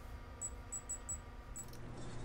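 Electronic oven control panel beeping as the keypad is pressed to set the preheat to 350 °F: about five short, faint, high-pitched beeps at uneven intervals, three of them in quick succession about a second in, over a low steady hum.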